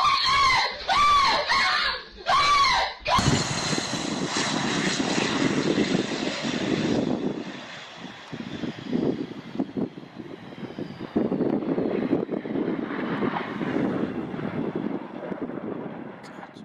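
A few repeated high-pitched cries, then propeller aircraft engines running with a faint whine that slowly falls in pitch. After that comes an uneven rumble that rises and falls.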